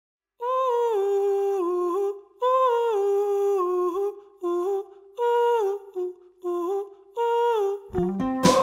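Wordless humming of a short melody that steps down in pitch. It comes in repeated phrases with brief breaks between them.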